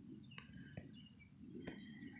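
Near silence with a few faint, short bird chirps in the background.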